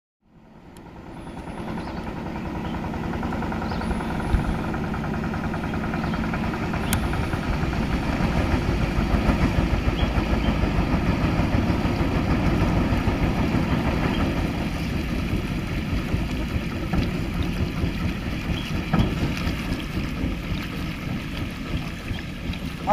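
Motorboat engine running steadily on a river, fading in over the first two seconds or so.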